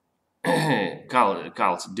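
A man clears his throat, a short voiced rasp about half a second in, then goes on speaking.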